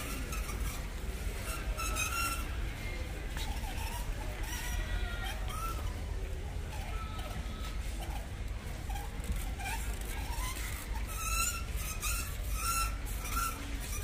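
Warehouse store background: a steady low hum with faint distant shoppers' voices, and a run of short faint beeps, about two a second, near the end.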